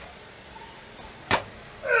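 A single sharp slap a little past halfway as a karateka drops to the mat for a drop front kick, his body hitting the floor. A short grunt follows near the end.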